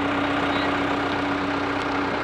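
SkyTrak telehandler's diesel engine running steadily as the machine drives under load, with a steady mid-pitched hum over the engine noise.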